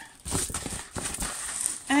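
Protective plastic film on a large diamond-painting canvas crinkling and rustling as the canvas is folded, in a run of irregular scrapes and crackles.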